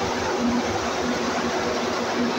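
Steady running noise of industrial machinery: a constant broad rush with a low hum that comes and goes.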